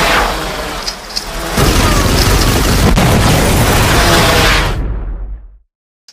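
Loud explosion sound effect laid over the action: a rumbling blast that swells about a second and a half in, holds, then fades away near the end.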